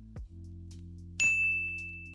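A bright bell-like ding sound effect strikes about a second in and rings on, fading slowly, over a soft sustained music bed.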